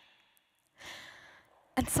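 A woman's single audible breath, about a second long, close to a headset microphone, after a short near-silent pause; she starts speaking again near the end.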